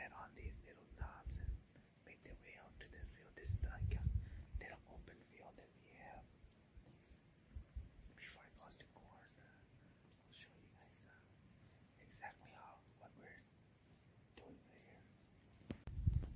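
A man whispering in short, hushed phrases.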